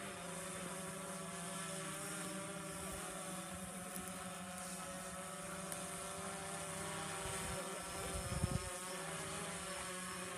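A steady motor-like drone: a low hum with several slowly wavering higher tones. Wind rumbles on the microphone in gusts about seven to nine seconds in.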